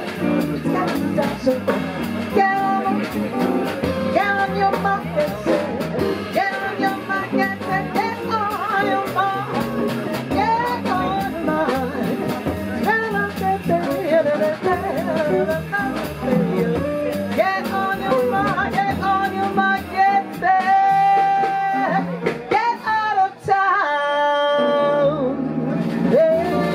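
Live jazz: a woman sings over a band with drums and keyboard, holding long notes near the end.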